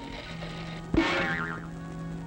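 Cartoon orchestral score holding a low sustained note; about a second in, a sudden sound effect cuts in, a sharp hit followed by a wobbling, sliding pitch.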